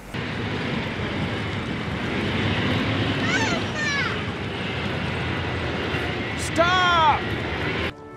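Tank engine running steadily, with a boy's high-pitched shouts of 'Mamma!' rising over it twice, once about three seconds in and again near the end.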